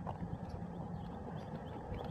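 Bicycle rolling along a paved street: a steady low rumble of tyres and wind on the microphone, with a few faint light ticks.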